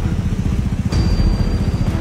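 Small scooter-type motorcycle engine idling with a steady, fast low putter.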